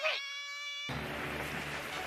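A high-pitched cartoon voice cries out from the anime's soundtrack over a steady, held musical tone. The tone cuts off abruptly about a second in, leaving a faint hiss and a low hum.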